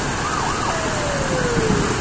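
Muddy floodwater rushing across a road, a steady noise of running water. Over it, a faint single tone wavers briefly, then slides slowly down for about a second, like a distant siren.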